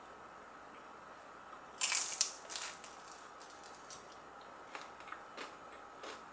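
Crisp bite into a pan-fried flat dumpling (napjak mandu) about two seconds in, followed by several softer crunches as it is chewed.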